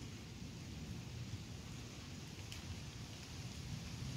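Faint, steady rain with a low rumble underneath.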